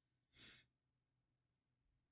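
Near silence, broken about half a second in by one short breath from the reader between sentences.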